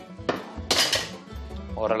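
Talo dough being slid off a paddle onto a metal griddle over a gas burner, making a brief scraping noise about a second in. Background music with a steady bass beat plays underneath.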